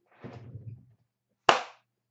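A soft shuffling sound, then a single sharp smack about one and a half seconds in that dies away quickly.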